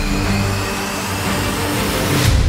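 Intro theme music for a show's logo animation, with a rising whoosh sweep building under it.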